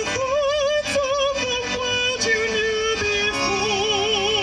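Music: a slow, descending melody of held notes, each with a wide, even vibrato, over soft accompaniment.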